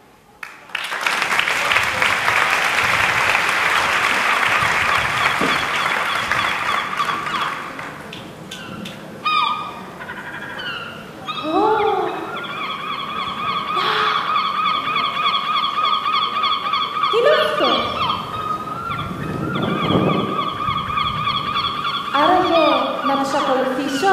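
Audience applause for about eight seconds after the music stops, dying away. Then a recorded track for the next number starts, with sliding, voice-like calls over a held tone.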